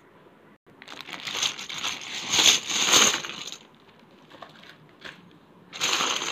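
Small plastic letter tiles clattering as they are tipped out of a crinkling plastic bag into a box for about three seconds, then a short second clatter near the end as a hand spreads the tiles about.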